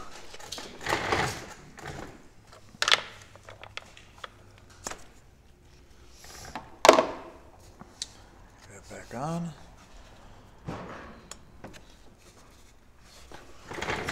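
Hands handling the plastic engine housing of a Stihl FS45C string trimmer: scattered clicks, taps and rustles as parts are pulled off, with one sharp click about seven seconds in.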